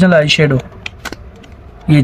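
A few sharp clicks and taps of plastic cosmetic packaging handled in the hands, in the pause between spoken words.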